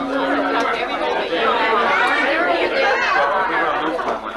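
Several people talking at once: overlapping conversation.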